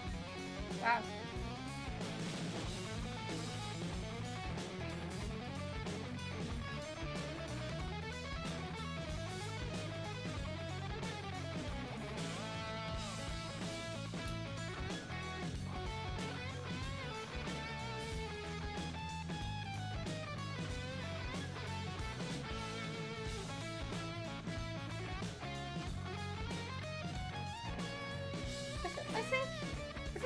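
Instrumental rock music led by an electric guitar playing melodic lead lines with bent, gliding notes over a steady bass, at a moderate, even level.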